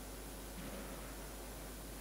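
Quiet, steady room tone: an even hiss over a low hum, with no distinct event.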